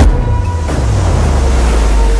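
Sea waves crashing and surging over rocks, with a heavy deep rumble, opening on a sharp hit.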